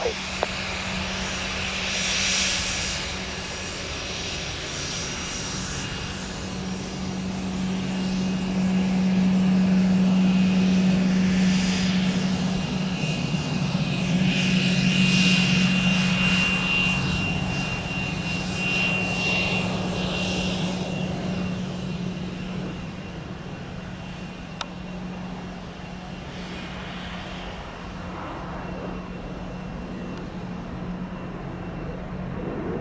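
Embraer ERJ-145 regional jet taxiing past with its two Rolls-Royce AE 3007 turbofans at taxi power. A steady low drone swells as the jet passes close about halfway through, with a high whine for several seconds, then slowly fades as it moves away.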